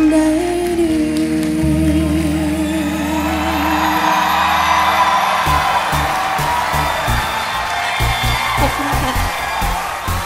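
A woman's solo singing voice holding a long final note with vibrato over a band accompaniment, ending the song. About five seconds in, the audience breaks into applause and cheering over the last of the music.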